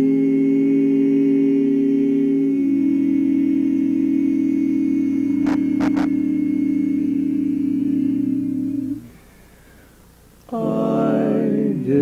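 Male barbershop quartet singing a cappella, holding one long sustained chord whose lower voices shift once about two and a half seconds in; the chord is released about nine seconds in. After a pause of a second or so the four voices start again with a rising slide. Two faint clicks come midway.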